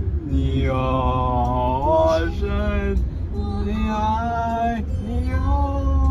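Voices singing long, drawn-out notes that slide between pitches, heard inside a moving car with a steady low road and engine rumble underneath.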